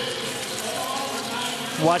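Steady arena ambience in an indoor speed-skating oval: a hiss of background noise with faint, indistinct crowd voices.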